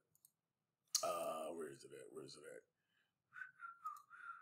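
Faint sounds from a man at a computer: a quiet, low mutter about a second in, then a few soft whistled notes near the end, with a computer mouse clicking.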